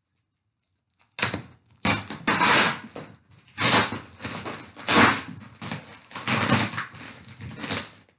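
Packing tape being ripped off a cardboard box in a series of loud tearing pulls, starting about a second in, with the cardboard crackling under her hands. The box is tightly taped shut.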